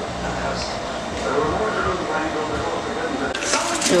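Indistinct voices in the background, too unclear to make out words, over a low hum; near the end the sound cuts to a closer, clearer recording.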